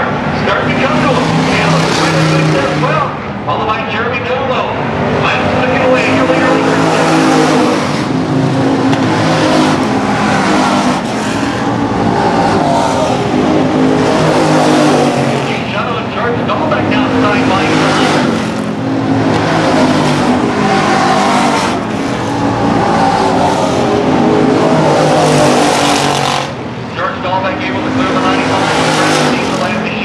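Pack of stock car engines running hard around an oval track, loud and continuous, their pitch rising and falling as the cars pass through the turns.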